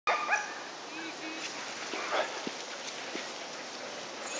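Huskies in a cart-pulling team barking and yipping, in short calls that are loudest in the first half-second, with a few more about a second and two seconds in.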